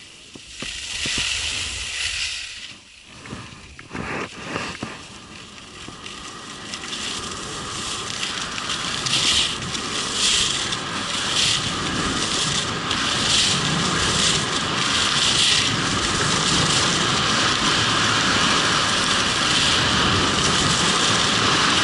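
Snow scraping and hissing under a rider's edges on a groomed piste, with wind rushing over a helmet-mounted microphone. It grows louder as the rider picks up speed, with a scraping surge about once a second at each turn in the middle of the run.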